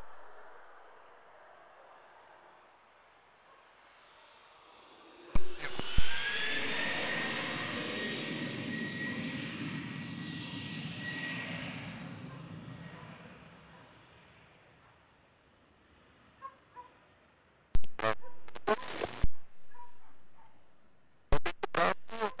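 Learjet 75 business jet landing: its turbofan engines give a high whine over a broad roar that swells about five seconds in, then fades away over about eight seconds as it rolls out. Several sharp clicks come about five seconds in and again near the end.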